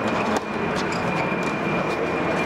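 A steady, loud rushing noise with a thin high whine held throughout, and a few sharp knocks over it.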